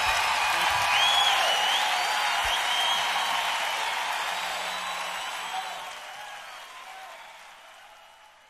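Live concert audience applauding and cheering, with a few whistles, fading steadily away.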